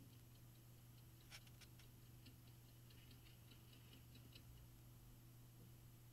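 Faint ticking of a small clock over a steady low hum, with one sharper tick about a second in. The ticking stops a little over four seconds in.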